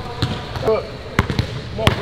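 A basketball dribbled on a hardwood gym floor: about four sharp bounces at uneven spacing, the last two close together near the end.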